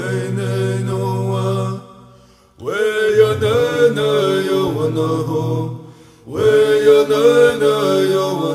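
A man singing a Native American Church peyote song in vocables, in a chanting style. The phrase ends about two seconds in, and after a short breath a new phrase begins with an upward slide; another brief break comes about six seconds in before the singing resumes.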